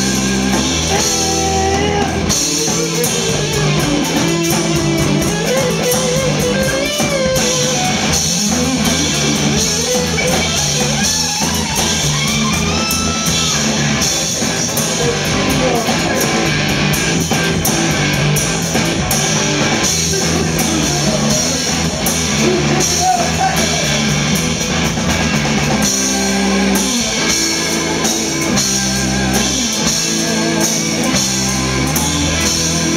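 A live rock band playing loudly: electric guitar through Marshall amplifier cabinets, bass guitar and drum kit, with a vocalist singing over them.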